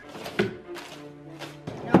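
Desk drawers being pulled open and knocked shut, with a small thunk about half a second in and a louder one at the very end.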